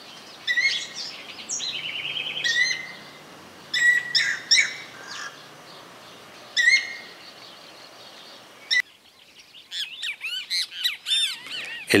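Guira cuckoo calling: several separate phrases of high whistled notes, some rapidly repeated. About nine seconds in the background changes suddenly, and another bird's quick rising-and-falling calls run to the end.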